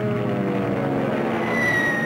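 Propeller warplanes in formation, their engines droning steadily with a pitch that sinks slowly. A high whistle comes in near the end and falls slightly in pitch.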